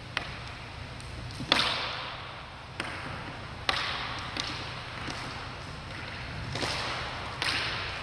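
A long thin fitness rope swung like a whip, each stroke ending in a sharp slap or crack, about eight strokes at uneven intervals. Each stroke echoes off the hard walls of an empty court.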